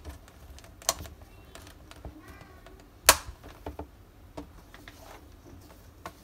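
Metal snap fasteners on a leather strap being pressed onto the studs of a leather notebook cover, with light clicks of handling; one sharp snap about three seconds in is the loudest.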